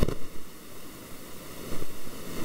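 Steady hiss from an open microphone, with a few short low thumps: one right at the start, one about half a second in, and two close together near the end.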